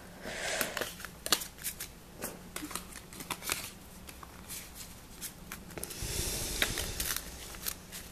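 A stack of Pokémon trading cards being flipped through by hand: a string of light card snaps and clicks with sliding rustles of card on card, and a longer sliding rub about six seconds in.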